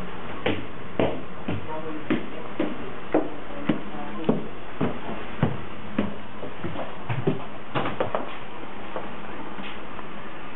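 Footsteps climbing a staircase, about two steps a second, each a short knock, over a steady hiss.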